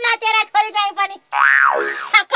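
A short comic sound effect about 1.3 s in, after a few spoken words: a hissy swoop whose pitch rises and then falls, lasting about half a second.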